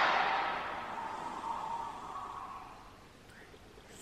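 The closing sound hit of a movie trailer played through a phone speaker, a noisy wash that dies away over about three seconds to near silence.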